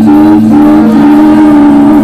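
Live experimental music: held, sustained tones over a steady low drone, with a brief break in the upper note about half a second in before it resumes.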